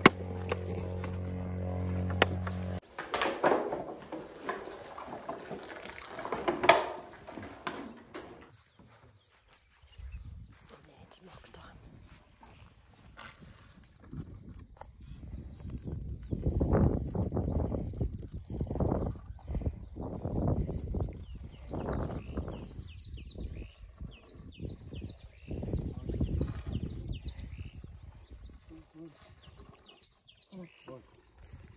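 A young elephant calf suckling from a milk bottle, with a run of low gulping and sucking sounds about a second apart. It opens with a steady low droning tone that cuts off about three seconds in.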